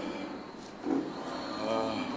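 A brief, indistinct voice near the end over steady background noise, with a short dull sound about a second in.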